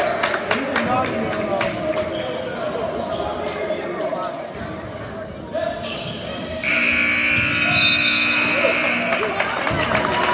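A basketball bounces on a hardwood gym floor amid crowd voices. About seven seconds in, the scoreboard horn sounds a steady tone for about two seconds as the game clock runs out.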